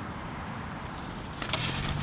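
Steady low background noise with no clear source, then a short rustle of handling near the end as the foam takeout box and its napkins are moved.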